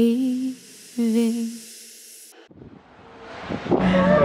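A woman's voice hums the song's closing notes, two held notes with a slight waver, the second ending about a second and a half in. The music then falls away to a hiss and a near-quiet gap, and street noise swells up toward the end.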